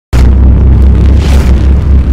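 Intro sound effect: a loud, deep boom that hits suddenly just after the start and carries on as a sustained low rumble.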